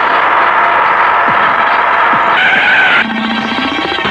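Bus tyres and brakes screeching as it pulls up: a loud, steady screech that turns to a higher squeal past the middle, then a lower drone near the end.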